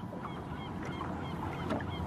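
Birds calling in a quick series of short, high calls, about four a second, over a low steady background.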